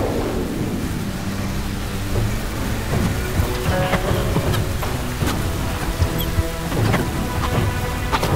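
A sound effect for magic energy: a continuous low rumble with scattered sharp crackles, growing busier from about three seconds in, layered over dramatic score music.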